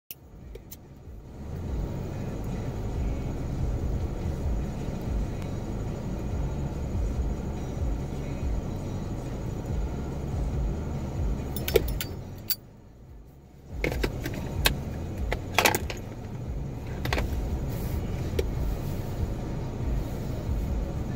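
Steady low rumble inside a car cabin, with a brief dip about two-thirds through. A few sharp clicks and small metallic rattles come in the second half.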